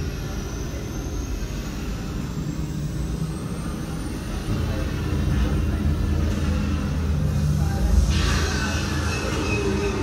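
Theme-park ambient soundscape for a docked starship: a steady low engine rumble and hum, with a burst of hissing about eight seconds in that fades away.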